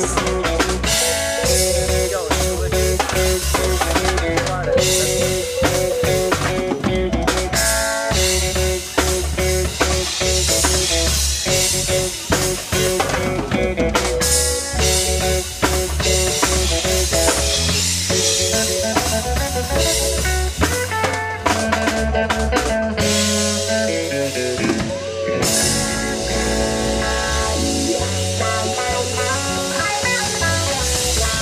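Live reggae band playing an instrumental passage without vocals: drum kit with rimshots, electric bass guitar, electric guitar and keyboard. The bass drops out briefly a little over twenty seconds in, then comes back.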